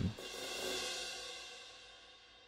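A sampled cymbal from a MIDI drum library, a single note previewed while its velocity is edited by hand. It rings softly and fades away over about a second and a half.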